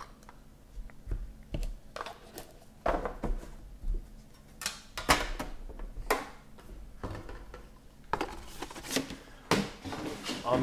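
Cardboard trading-card boxes and sleeves being handled: an irregular series of taps, clicks and scrapes as boxes are slid open, set down and stacked on the table.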